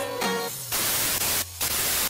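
Background music stops about half a second in and gives way to a loud burst of television static hiss, a TV-static transition sound effect. The hiss dips briefly near the end.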